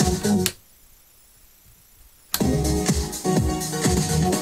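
A house track playing through a DJ mixer is cut off abruptly about half a second in, the channel volume fader snapped out. It is snapped back in almost two seconds later, the music returning at full level.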